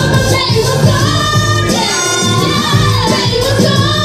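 Live pop performance: a female vocal trio singing into microphones over amplified music with a steady beat.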